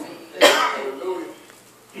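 A man clearing his throat once, a short rough cough-like burst about half a second in that fades within a second.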